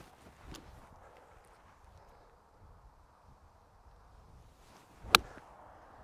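A pitching wedge striking a golf ball off the turf: one sharp, short click against a quiet outdoor background.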